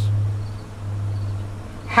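A steady low hum in a pause between words.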